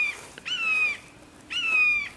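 A hawk calling: repeated high screams, each about half a second long and falling slightly in pitch, about one a second.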